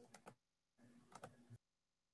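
Faint computer-keyboard typing in two short bursts of clicks, the second about a second in, cut in and out by a video call's noise gate.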